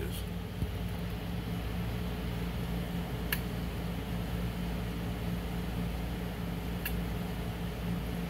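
Steady electrical hum and fan whir from the radio test bench's equipment while the amplifier is keyed on a dead carrier, with two short clicks, about three and seven seconds in.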